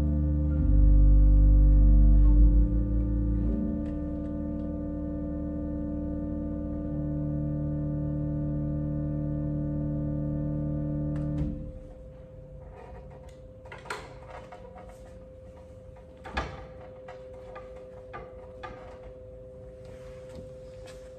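Organ playing sustained final chords over a deep pedal bass. The chords change a few times and are released about eleven seconds in. After that a faint steady hum remains, with a few soft knocks and rustles.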